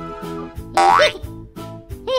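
Light background music with a cartoon sound effect: a quick rising whistle-like sweep about three-quarters of a second in, ending in a short wobbling boing.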